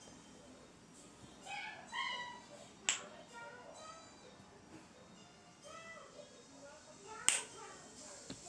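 Two sharp clicks from a small handheld fidget toy, about three seconds in and again near the end, with short high-pitched meow-like calls before each.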